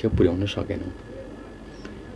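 A man's voice speaking briefly at the start, then a pause with only low room tone.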